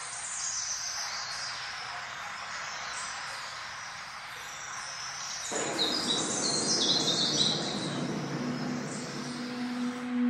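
Birds chirping, many short high calls over a steady rushing background; about five and a half seconds in, a deeper rushing noise cuts in suddenly, and near the end a low held tone begins as music starts.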